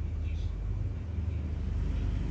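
A low, steady rumble with faint voices behind it.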